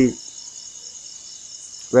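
A short pause in a man's speech, filled by a faint, steady high-pitched trill of insects in the background; the voice cuts in again near the end.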